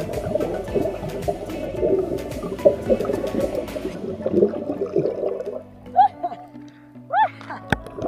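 Underwater bubbling and gurgling water noise, dense for the first five seconds or so, under background music with steady held notes. Two short rising-and-falling voice-like calls come near the end, followed by a sharp click.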